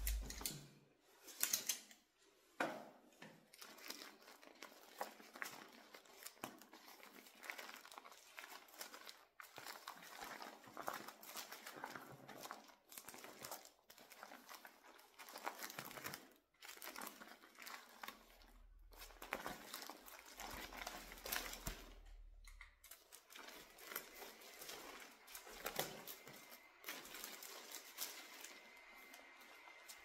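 Irregular rustling and crinkling of something being handled close to the microphone, with many small sharp crackles, loudest in the first two seconds. A faint steady high tone comes in near the end.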